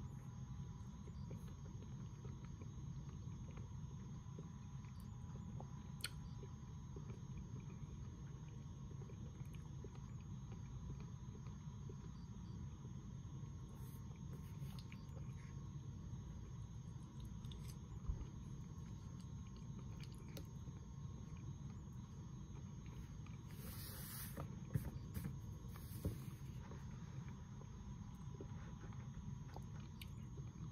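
Quiet eating: a plastic spoon clicking and scraping a few times in a cottage cheese tub, with soft chewing, over a steady low room hum and a faint high tone.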